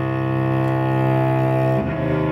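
Cello playing long, held bowed low notes, then moving to new notes near the end.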